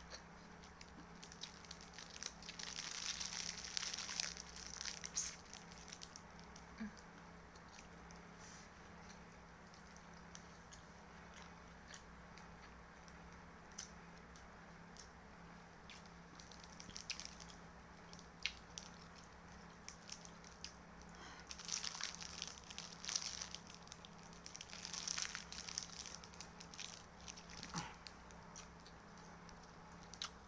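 Eating a seaweed-wrapped rice ball: quiet chewing and biting, with two spells of plastic wrapper crinkling, one a few seconds in and one past the middle. A small desk fan hums steadily underneath.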